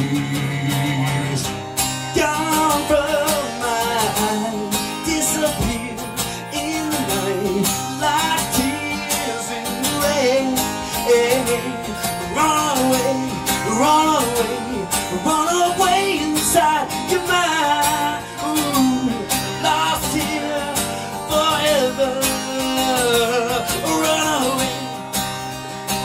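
Live acoustic rock performance: a man singing a wavering, sliding vocal line over acoustic guitar.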